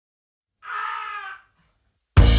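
A single short, high cry like a human voice, lasting under a second, its pitch sinking a little at the end.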